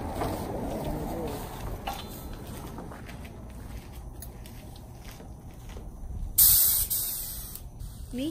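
Compressed-air paint spray gun fired in one burst of loud hiss, starting sharply about six and a half seconds in and lasting about a second, over a steady low background noise.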